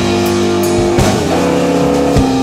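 Blues band playing live: electric guitar, bass guitar, drum kit and Hammond organ holding chords between sung lines, with drum hits at the start and about a second in.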